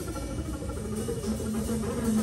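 Double bass played with a bow: sustained, scratchy droning tones, with a steadier low note settling in about a second in.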